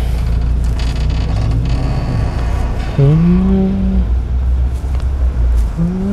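Engine and cab noise of a manual-transmission small truck pulling away from a stop: a steady low rumble, with the engine note climbing as it accelerates over the first couple of seconds.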